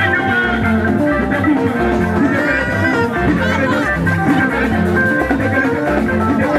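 Live band music: guitar lines over a bass and drum kit keeping a steady beat.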